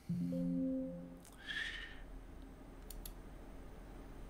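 A man's brief low closed-mouth hum lasting about a second, then a soft breath, and two faint mouse clicks about three seconds in.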